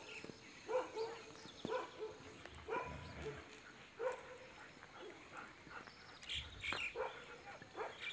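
Bhotiya dogs barking in short, repeated barks about once a second, with a pause of a second or two about halfway through.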